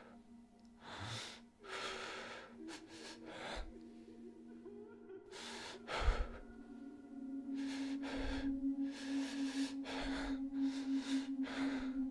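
Dark ambient soundtrack: a sustained low drone that swells toward the end, laid under a dozen or so short, irregular breathy gasps and exhales, with a low thump about six seconds in as the loudest moment.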